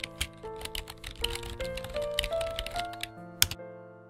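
Rapid, irregular keyboard-typing clicks over background music whose sustained notes climb step by step. The clicks end with one louder click about three and a half seconds in, and only the music carries on.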